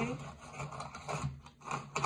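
Deli wooden colored pencils clicking and rattling against each other in their metal tin as fingers run over them: a few irregular light taps.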